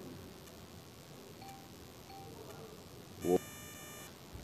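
A pause in a crowded room: low room noise with two faint short beeps. Near the end a brief voice sound comes with a high electronic chime, like a phone alert.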